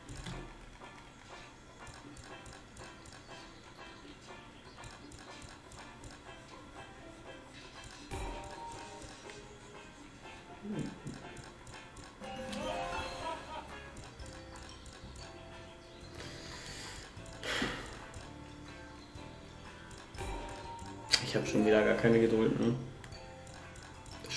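Greedy Wolf video slot's background music and reel-spin sound effects playing at a low, steady level on autoplay, with a few short louder effects along the way.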